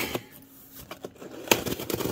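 Very sharp knife slitting the packing tape on a cardboard box: scratchy scraping with a few small ticks, and one sharper tap about one and a half seconds in.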